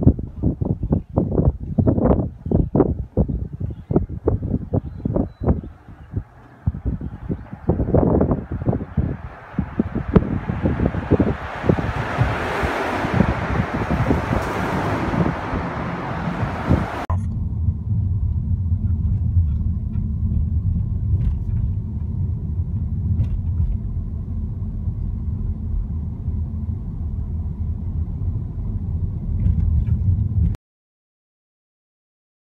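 Footsteps knocking on the wooden plank walkway of a covered bridge. Partway through, a vehicle's rushing noise builds up through the bridge. Then an abrupt cut to the steady low rumble of a car driving on a rough road, heard from inside the car.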